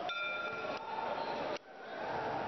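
Boxing round bell giving one short, steady ring of about three-quarters of a second over arena crowd noise, signalling the start of the final round.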